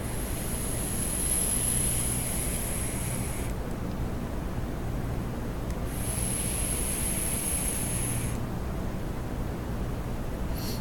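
Electronic cigarette (vape mod and atomizer) being drawn on twice: a hiss of air and sizzling coil with a thin high whine, about three and a half seconds long, then again for about two and a half seconds.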